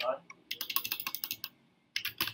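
Typing on a computer keyboard: a fast run of keystrokes for about a second, then a stop.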